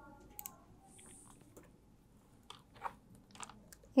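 Faint, irregular clicks of a few key presses on a laptop keyboard, spaced well apart.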